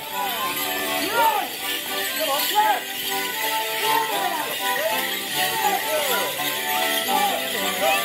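A folk dance tune played live for Morris dancing, with the jingling of the dancers' leg bells and people's voices over it.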